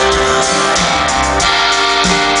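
Live rock band playing an instrumental passage between sung lines, with guitar to the fore over sustained keyboard chords.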